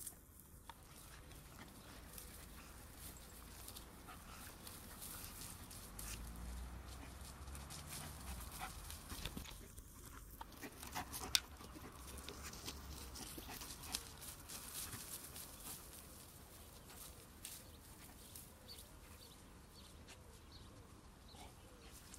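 Faint sounds of a dog moving about in a grassy meadow, with a few soft clicks and a low rumble in the middle.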